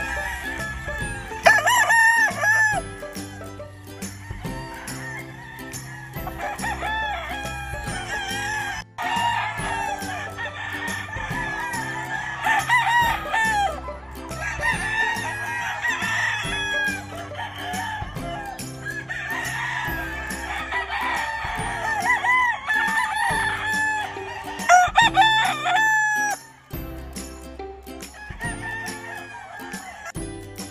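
Gamefowl roosters crowing again and again, the calls overlapping, with clucking between them, over background music.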